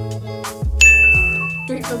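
A single bright, high ding that starts sharply about halfway through and rings for just under a second, over background music with a bass line and a steady beat.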